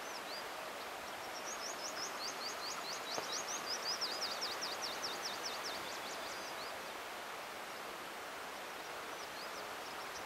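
A bird singing a long run of quick, high sweeping notes, about five a second, that starts a second or so in and stops a few seconds before the end, over a steady outdoor background hiss.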